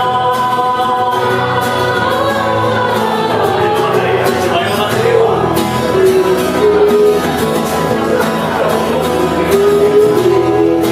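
A man singing live with acoustic guitar accompaniment, holding long sustained notes.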